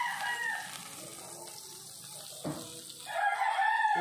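Flour-coated chicken pieces sizzling in deep palm oil in a pan, with a rooster crowing near the end; the tail of an earlier call fades out at the start.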